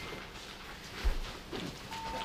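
Quiet office room tone with one soft, low thump about a second in.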